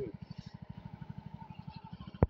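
A small engine running steadily, a faint, low, even pulsing of about fifteen beats a second.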